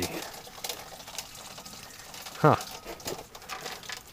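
Faint scattered clicks and rustling of plastic air-intake and battery-box parts being handled by hand, with a short "huh" about two and a half seconds in.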